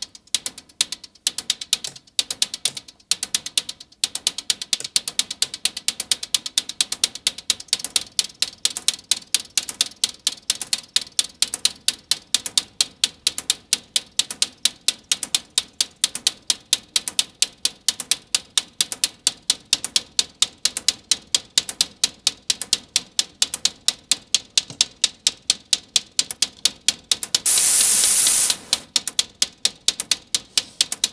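Short, sharp synthesized hi-hat ticks from an analog modular synthesizer, uneven at first, then settling into a fast steady pulse of about five to six a second. Near the end there is a loud burst of hiss lasting about a second.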